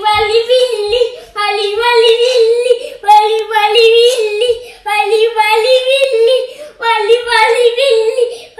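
A young child singing without accompaniment, in short repeated phrases about a second and a half long, each held on a nearly level pitch with brief breaks between them.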